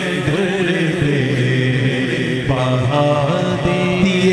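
Naat recitation: unaccompanied chanted vocals over a steady low vocal drone. A voice comes in about halfway with long, wavering held notes.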